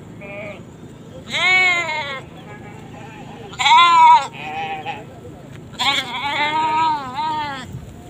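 Goats bleating: three loud bleats with a quavering pitch, the last one the longest at nearly two seconds.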